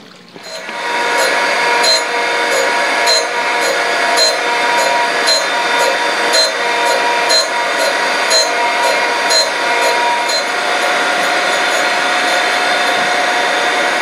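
Surface grinder running. The wheel motor comes up to speed in the first second or so, then runs steadily, with a regular tick about once a second until about ten seconds in as the work passes under the wheel. The wheel is sparking out to nothing on the cast-iron edge, a sign that the edge was sitting low.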